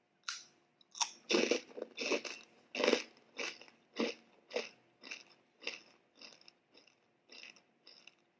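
Close-up crunching of a small crispy rolled snack. A couple of sharp bites come in the first second, then steady crunchy chewing at about two chews a second, growing fainter as the mouthful is chewed down.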